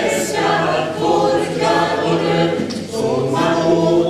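Small mixed choir of women's and men's voices singing a cappella in parts, with long held notes.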